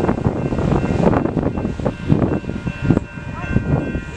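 Passenger train approaching on the tracks: faint steady high tones from it grow stronger toward the end, over wind noise on the microphone and scattered voices.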